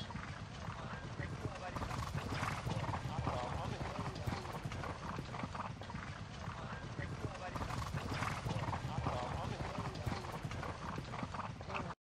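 Background ambience of an indistinct murmur of voices with horse hooves clip-clopping, steady in level throughout.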